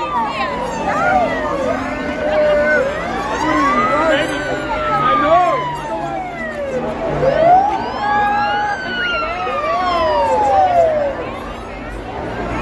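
Several police sirens wailing at once, each slowly sweeping up and down in pitch and overlapping one another, over the chatter and shouting of a large street crowd.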